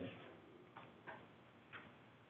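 Near silence: room tone with three faint, short ticks.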